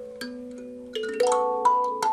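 Instrumental music of single struck notes that ring on, sparse at first, then louder with several notes close together after about a second.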